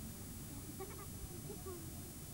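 Faint, distant voices over a steady hiss, with a short call about a second in.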